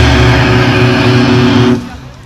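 Hardcore metal band's distorted electric guitars and bass holding one sustained chord at the end of a song, stopping abruptly near the end.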